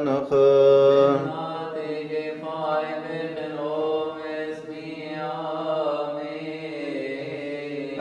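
Coptic Orthodox liturgical chant, long held sung notes over a steady low pitch. It is loud for about the first second, then continues softer with slowly moving notes.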